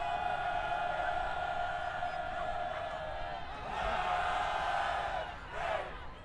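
Voices shouting a long, drawn-out call on one high held pitch, about three seconds long, followed by a second shorter call, like a band or crowd chant.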